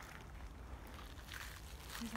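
Quiet outdoor ambience: a steady low rumble with a few faint, soft rustles about halfway through.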